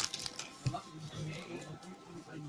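Faint background voices and music at low level, with light handling of trading cards as they are slid and flipped through by hand.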